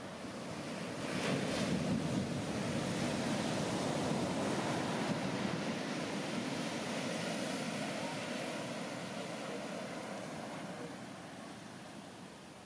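Heavy shorebreak wave crashing about a second in, followed by a long rushing wash of whitewater that slowly fades.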